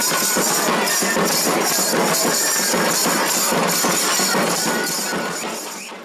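Folk dance music from waist-slung hand drums with bright metallic percussion, a fast steady beat. It fades out over the last second.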